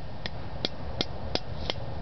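Five light, sharp knocks at an even pace, about one every third of a second.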